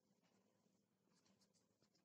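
Near silence: room tone with a few faint scratchy ticks in the second half, from hands tying a cloth strip around a homemade mop head.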